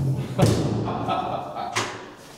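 A toilet-cabin door shutting with a thump about half a second in, then a shorter, sharper knock near the end.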